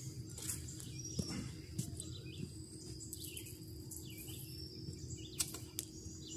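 Quiet riverside ambience: faint bird chirps over a steady high insect drone, with a couple of light clicks.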